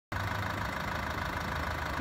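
Land Rover Freelander 2.2 SD4 turbodiesel engine idling steadily.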